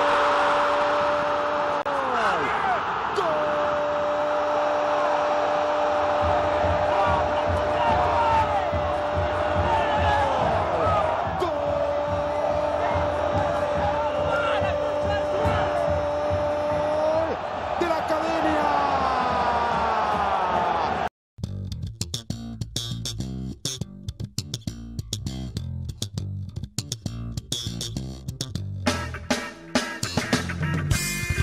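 A television commentator's long drawn-out goal cry, held on one pitch for several seconds at a stretch in three long breaths, over a roaring stadium crowd. About 21 seconds in it cuts off abruptly, and music with bass guitar and guitar follows.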